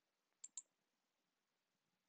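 Near silence broken by two faint, quick clicks about half a second in.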